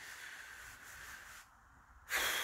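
Near silence: a faint hiss that drops away about one and a half seconds in.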